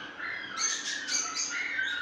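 Cage birds chirping and squawking in a busy string of high calls from about half a second in.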